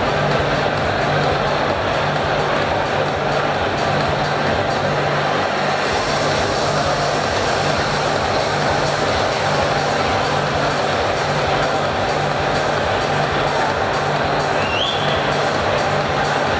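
Background music with a steady low beat over a dense, even wash of hall noise.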